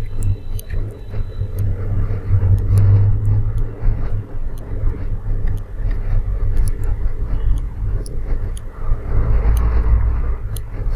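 A deep, low rumble that swells twice, about three seconds in and again near the end, with faint scattered clicks over it.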